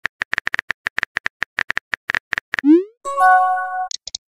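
Chat-app sound effects: a quick run of keyboard-tap clicks for about two and a half seconds, then a short rising whoosh of a message being sent, then a held electronic chime of several notes lasting about a second.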